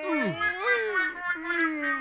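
A man's long wordless wailing cry of disgust, pitch dropping sharply at the start, then wavering up and down in drawn-out moans.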